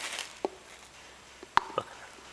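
Hand grease gun being worked at a mower wheel hub: a faint click about half a second in, then a sharp click about a second and a half in, followed closely by a smaller one.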